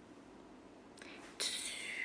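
A woman's breathy, whispered vocal sound, starting suddenly about one and a half seconds in as a hiss with a falling whistle-like tone: a mouth imitation of a firework.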